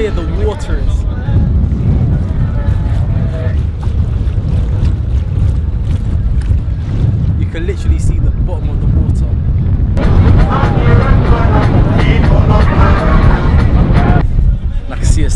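Heavy, steady low rumble of wind buffeting the microphone on a moving boat, with people's voices over it that grow louder and busier in the last few seconds.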